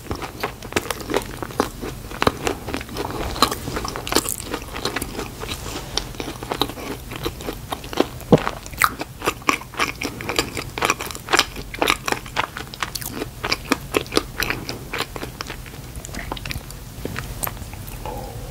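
Close-miked chewing of a mouthful of Krispy Kreme donut: a steady run of mouth clicks and smacks, several a second, easing off slightly near the end.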